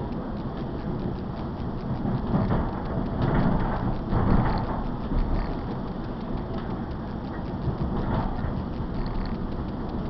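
Running noise of an electric suburban train heard from inside the carriage: a steady rumble of wheels on the rails, swelling louder for a few seconds from about two seconds in.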